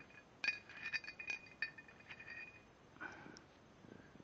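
Steel masonry drill bits clinking against each other and the concrete floor as they are handled and laid out: a few light metallic clinks, each with a short ring, in the first couple of seconds.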